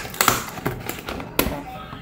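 Tape being peeled off a cardboard cake box and the lid opened: a few short sharp rips and rustles of cardboard.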